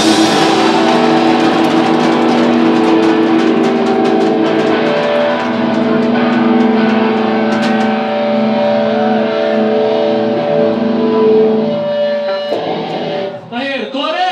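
Live punk band playing through amplifiers: distorted electric guitars and bass holding ringing chords over drums. About twelve and a half seconds in, the playing stops abruptly and a voice is heard near the end.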